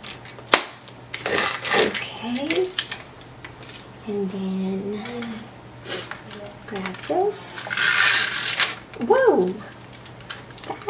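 Paper craft handling at a desk: a sharp click about half a second in, small knocks and rustles as cut paper pieces are moved, and a long loud paper rustle from about seven to nine seconds in. Short wordless vocal sounds from a person come in between.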